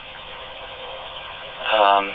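Kenwood TK-3701D PMR446 walkie-talkie's speaker receiving a dPMR digital transmission: a steady rush of background noise from the far end of the link, then a man's voice comes through near the end.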